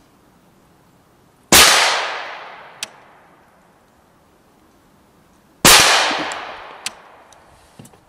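Two rifle shots from a suppressed BCI Defense Professional Series rifle, about four seconds apart, each a sharp report with a long echo trailing off. A faint sharp tick follows each shot a little over a second later.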